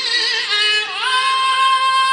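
Qur'an recitation in a high, melodic male voice. An ornamented, wavering phrase dips just before a second in, then rises to a long held note.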